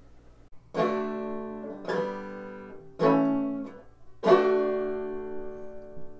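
Four strummed chords on a plucked string instrument, each struck sharply and left to ring out, the last one held longest: the opening of a folk-song accompaniment.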